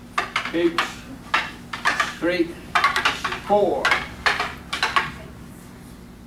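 Wooden bokken practice swords clacking together as several pairs trade cuts and blocks: a quick, irregular run of sharp wooden knocks, some in close bunches, stopping about a second before the end.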